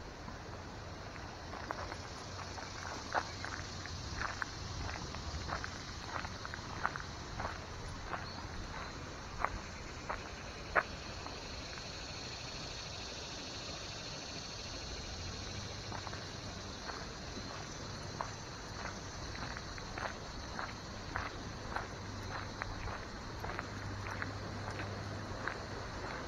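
Footsteps crunching on a gravel path, one or two steps a second, pausing for a few seconds midway, over a steady high background hum.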